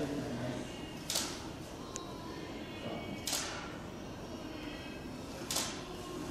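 A camera taking photos: three short, sharp shutter-and-flash clicks about two seconds apart, over faint room chatter.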